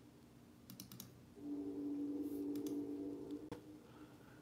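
A few faint clicks from working a computer or device's controls, with a steady low hum from about a second and a half in until shortly before the end.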